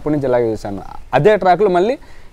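Only speech: a man talking in an interview, with a short pause about a second in.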